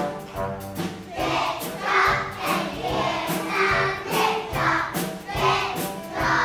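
A group of young children singing together over backing music with a steady beat. The voices come in about a second in, after a short instrumental lead-in.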